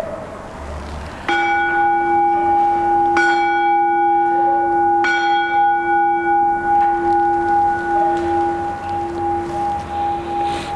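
A bell struck three times, about two seconds apart, starting about a second in. Each stroke rings on at one steady pitch and dies away slowly with a wavering pulse. It is rung at the elevation of the chalice during the consecration at Mass.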